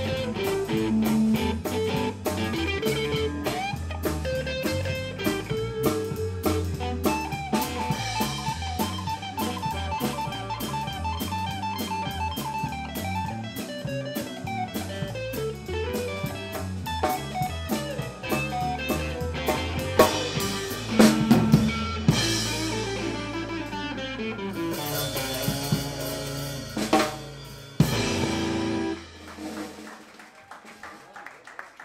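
Live blues-rock instrumental from a small band: drum kit keeping a steady beat under electric guitar and bass guitar. Past the two-thirds mark the beat gives way to held low notes, cymbal crashes and a few heavy hits as the tune winds down, and the sound drops away shortly before the end.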